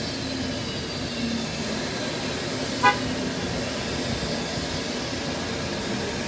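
A business jet's engines running over a steady noise, their high whine fading away in the first second. About three seconds in comes one short, sharp horn-like toot, the loudest sound.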